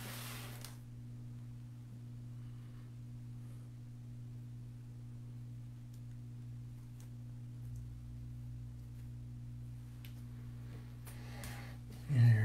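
Quiet room tone with a steady low hum, a short rustle at the start and a few faint clicks and rustles from handling artificial floral picks and a grapevine wreath.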